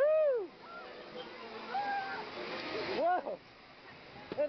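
High-pitched excited cries of "whoa", each rising then falling in pitch: a loud one right at the start and another about three seconds in. Between them a rushing noise builds and cuts off suddenly, typical of wind on the microphone of a moving ride.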